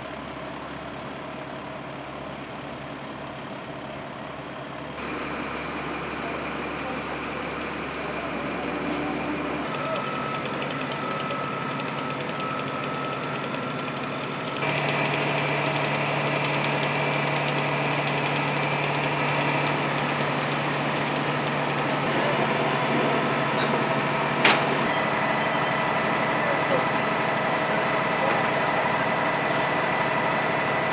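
Fire apparatus diesel engines running, a steady mechanical drone with constant hum tones that grows louder in two steps. One sharp click about three-quarters of the way through.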